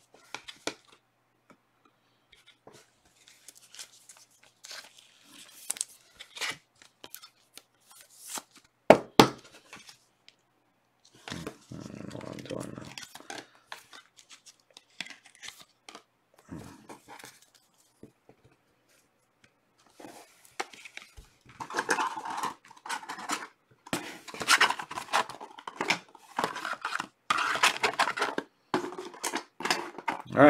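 Hands handling trading cards in clear plastic sleeves and holders: scattered clicks and taps with crinkling, rustling plastic, busier in the last third.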